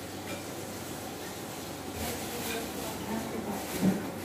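Light knocks and clinks of dishes and cutlery as rice is served onto a plate and a spoon is taken from a cutlery tray, with a single louder knock just before the end, over faint voices in the room.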